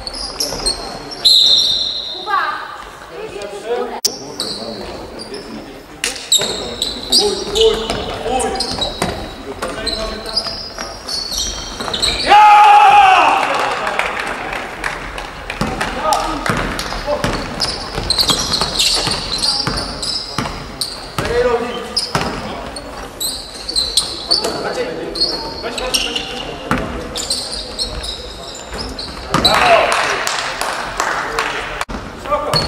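Live basketball play in a large, echoing sports hall: the ball bouncing on the wooden court, short high-pitched squeaks of sneakers, and players calling out to each other, with one loud shout about twelve seconds in.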